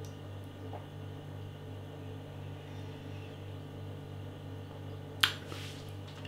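Steady low hum in a small room, and about five seconds in a short burst of breath from the drinker after a sip of beer.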